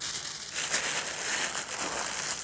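Clear plastic roasting bag crinkling and rustling continuously as it is handled and pressed, with many fine crackles of the thin film.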